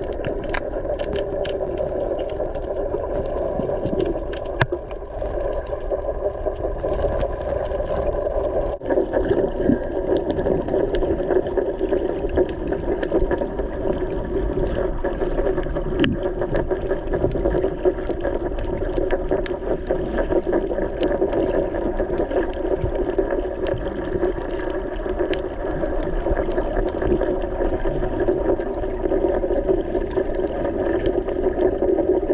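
Boat engine heard underwater: a steady drone, with scattered short clicks.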